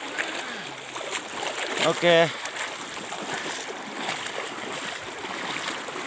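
Floodwater sloshing and splashing steadily around a person wading armpit-deep through it.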